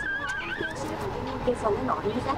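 Gulls calling as they fly in for food, a wavering cry near the start, over a murmur of people's voices.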